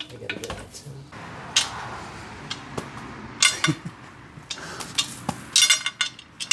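Loose steel studs and nuts from a three-piece wheel's assembly hardware clinking as they are driven out with a T40 driver and dropped onto concrete: a series of sharp metallic clinks, several ringing briefly, the loudest past the middle and near the end.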